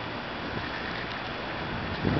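Steady rush of wind on the microphone of a camera carried on a moving bicycle.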